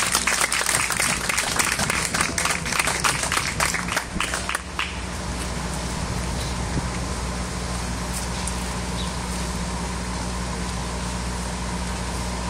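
Audience applauding for about five seconds, then dying away, leaving a steady low hum.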